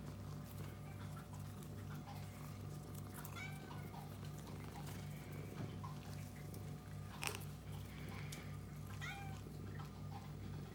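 Domestic cats giving several short, soft meows, a couple near the middle and a few more near the end, over a low, evenly pulsing hum. A single sharp click comes about two-thirds of the way through.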